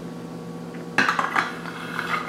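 Hard plastic toys knocking and clattering on a stone countertop as they are set down and moved: a quick run of sharp clicks starting about a second in, over a steady low hum.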